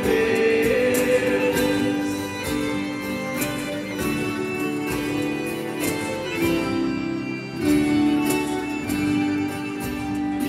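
Instrumental passage of a live sertanejo worship song: strummed acoustic guitar over sustained backing notes, played through a PA.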